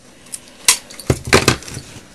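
A piece of Scotch tape pulled off its roll and torn off: a sharp click, then a quick cluster of crackly snaps about a second in.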